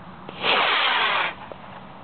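Model rocket's motor firing at liftoff: a loud rushing hiss that starts about half a second in, lasts just under a second and stops abruptly.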